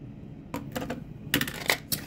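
Small plastic makeup products being handled: a quick run of sharp clicks and clatters in two clusters about a second apart, as a liner is put away and a mascara tube is picked up.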